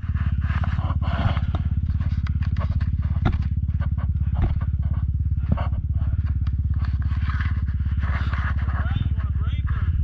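Dirt bike engine idling steadily, with scattered sharp clicks and knocks over it.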